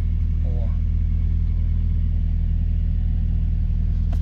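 Steady low hum of a car's engine running, heard from inside the cabin, with a brief faint murmur of a voice about half a second in.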